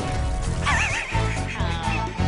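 Theme music with a steady beat, over which the cartoon creature gives a warbling cartoon voice effect starting about half a second in, followed by a second call that falls in pitch.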